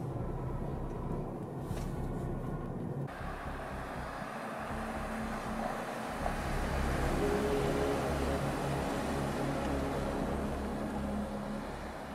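Car road noise, muffled as if heard inside the cabin, then from about three seconds in the fuller sound of an SUV's engine and tyres on asphalt as it rolls slowly through a parking lot. It is loudest from about six seconds in.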